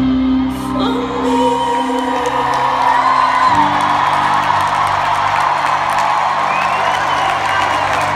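A live band holds its closing chords, shifting to a new chord about halfway through, while a large crowd cheers and whoops as the song ends.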